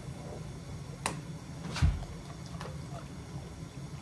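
A few short knocks and clicks from a person and a dog shifting about on a wooden floor: two sharp ones about one and two seconds in, the second with a dull thump and the loudest, then a fainter click, over a steady low room hum.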